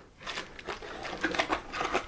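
Clear plastic packaging bag crinkling and rustling in the hands, a fast patter of small crackles.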